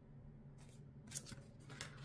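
Oracle cards being drawn from a deck and laid on a cloth-covered table: several short, quiet card slides and flicks, starting about half a second in, the sharpest about a second in.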